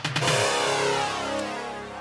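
Electronic music sting from the show's soundtrack, with a pitch that slowly sweeps downward and fades.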